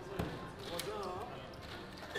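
Casino chips clacking as a roulette dealer sweeps losing chips off the layout. There is a sharp knock just after the start, over the chatter of voices around the table.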